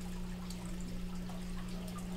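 Room tone: a steady low hum under a faint hiss.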